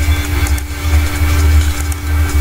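A steady low mechanical hum with a constant droning tone, with a few faint clicks over it.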